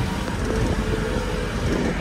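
Open-top safari jeep driving along a track: a steady engine drone with road and wind noise.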